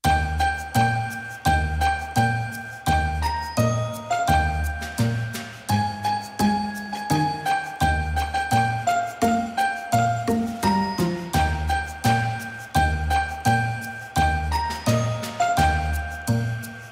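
Background music: a tune of bell-like chimes over a steady beat.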